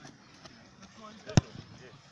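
A football struck once: a single sharp thud a little past halfway through, over faint distant voices.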